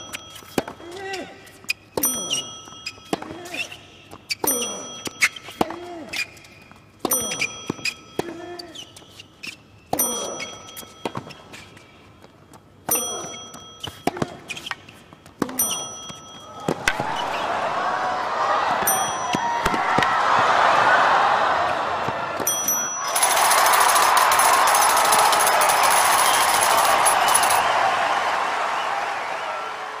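Tennis rally on a hard court: racket strikes on the ball about once a second, several followed by a player's short grunt. A little past halfway a stadium crowd breaks into cheering and applause, which swells, dips briefly, then carries on and fades toward the end.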